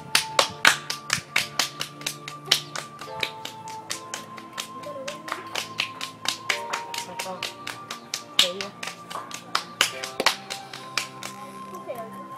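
Two children's hands clapping together in a fast rhythmic clapping game, about five claps a second, thinning out near the end. Background music with long held notes plays underneath.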